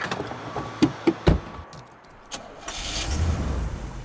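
A few sharp clicks and knocks, then a car engine starting and running briefly near the end.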